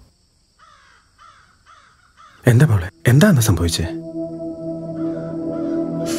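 A crow cawing faintly several times in quick succession, then two loud, short vocal outbursts. Sustained film background music comes in about four seconds in and holds steady.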